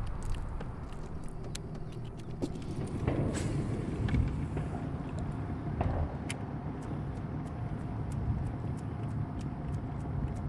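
Steady low rumble of a fishing boat on open water, with a faint hum, and light ticks coming at about two to three a second in the second half.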